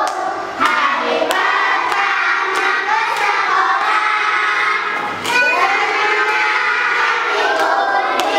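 A class of young children singing together in unison, with scattered hand claps and a short break about five seconds in.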